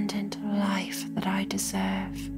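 Soft whispered voice over slow ambient music with a steady low drone; the whispering breaks off at the end.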